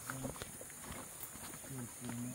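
Footsteps of people walking in sandals along a muddy dirt trail through brush: a few irregular steps and scuffs, with brief fragments of voices at the start and near the end.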